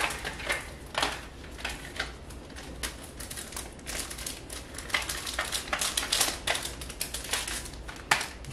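Plastic merchandise packaging being handled, crinkling and rustling in irregular crackles and clicks, several a second.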